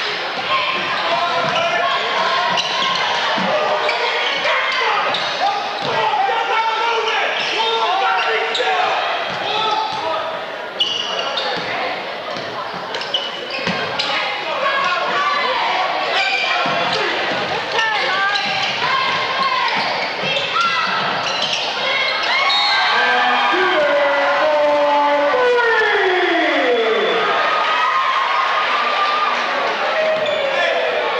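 A basketball being dribbled on a hardwood gym floor during live play, with spectators' shouting and chatter echoing in the gymnasium. A long call falls in pitch near the end.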